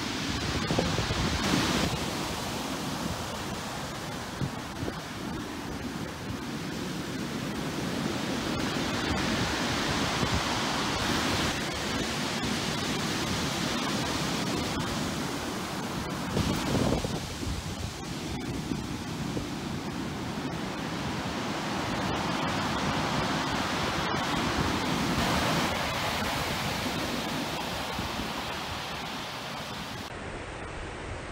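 Rough surf breaking on the shore: a continuous wash of noise that swells and eases as the waves come in, with louder surges near the start and about halfway through. Strong wind buffets the microphone.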